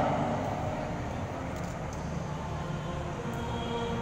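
Steady background noise of a large indoor sports hall, with a few faint clicks. The PA announcer's voice echoes away at the start.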